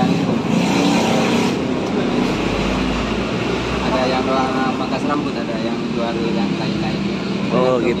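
Street traffic: a motor vehicle passes with a low rumble that swells a couple of seconds in, over steady road noise, with brief indistinct voices talking.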